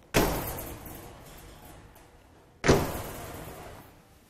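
Two sharp metal clunks about two and a half seconds apart, each ringing out and fading over about a second: the doors of a stainless-steel meal-delivery trolley being unlatched and swung open.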